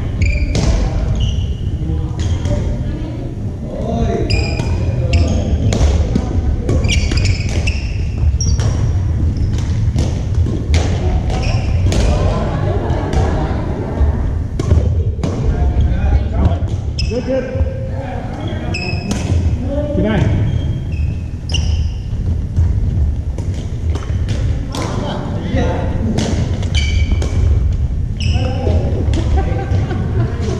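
Badminton in a large gym hall: rackets striking the shuttlecock and footfalls on the wooden court give short sharp knocks, and sneakers give brief high squeaks throughout. People's voices carry in the echoing hall over a steady low rumble.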